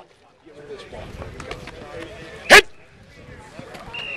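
Outdoor football practice ambience: a low bed of field noise and faint distant voices with scattered light clicks and knocks, broken about two and a half seconds in by one sharp, loud shouted "Hit!" starting a drill repetition.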